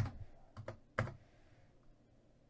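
A handful of keystrokes on a computer keyboard, the last about a second in.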